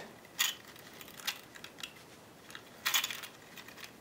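Braided picture-hanging wire being wrapped through a screw eye on a wooden canvas stretcher, giving scattered light metallic clicks and ticks, with a short cluster of them about three seconds in.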